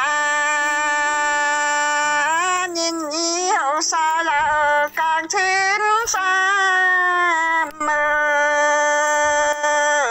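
A woman singing a Dao folk song in the Dao language: long held notes joined by slow pitch slides, with short breaks between phrases.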